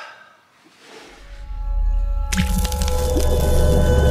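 Outro logo sting: a low rumble swells from about a second in, then a sudden hit a little past two seconds opens into several held ringing tones over a deep drone.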